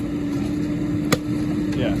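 A length of old Orangeburg pipe (tar-covered cardboard) breaks apart with one sharp crack about a second in. An engine hums steadily underneath.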